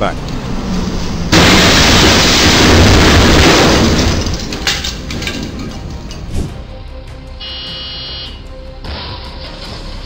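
A box truck's body striking a low railroad bridge: a sudden loud crash about a second in, a burst of noise that lasts a couple of seconds and then fades, over background music.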